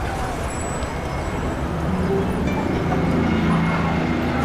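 Busy city street ambience: steady road-traffic noise, with a vehicle engine's low hum coming in about halfway through.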